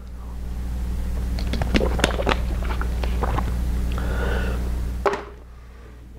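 Thin plastic water bottle crinkling and crackling while being drunk from, with a sharp click about five seconds in as the drinking stops.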